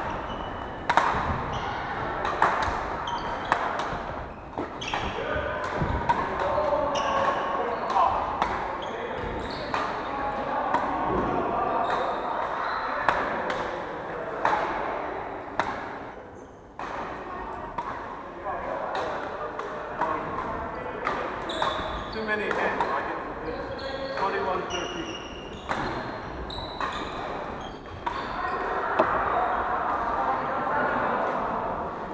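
Badminton rackets striking shuttlecocks, sharp irregular hits from several courts at once, over background chatter of voices in a large hall.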